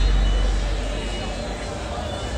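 Crowd of pedestrians milling along a busy street, a babble of many voices over a steady low rumble, easing slightly in level.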